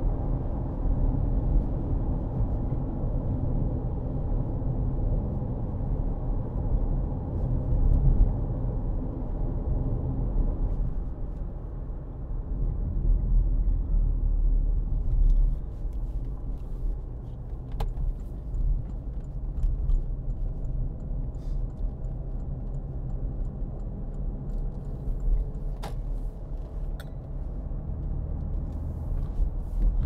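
Cabin noise of a 2013 Porsche Cayenne 3.0 V6 diesel on the move: a steady low engine and tyre rumble that eases after about ten seconds, with a few faint clicks later on.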